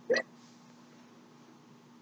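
One short vocal sound from a man, a hiccup-like catch in the throat, right at the start, followed by quiet room tone with a faint steady hum.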